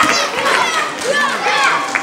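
Many children's voices chattering and calling out over one another, a continuous babble of young voices.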